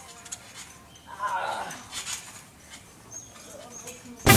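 Faint outdoor sound with a few light knocks and one short, high-pitched cry a little over a second in.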